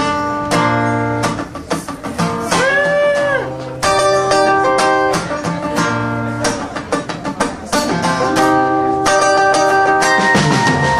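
Acoustic guitar strummed in chords as a live song begins, with a short note that bends up and back down about three seconds in.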